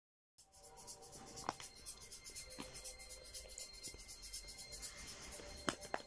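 Faint scratchy rubbing noise with a few sharp clicks, the strongest about a second and a half in and two close together near the end, over faint held musical tones.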